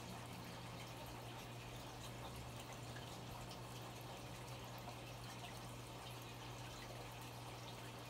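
Aquarium filtration running: a faint, steady trickle and drip of water from a hang-on-back filter and under-gravel filter, over a steady low hum.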